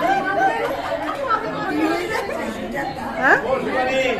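Chatter: several people talking close by at once, voices overlapping.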